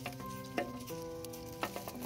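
Haskap berries dropping onto a plastic tray: a sharp tap about half a second in, then a quick run of three or four taps near the end, over soft background music with held chords.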